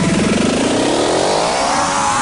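Happy hardcore build-up: a synth riser sweeping steadily upward in pitch, leading into the drop.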